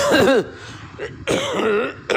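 A man clearing his throat: a short rough burst at the start, then a second brief voiced sound with a falling-then-rising pitch in the second half.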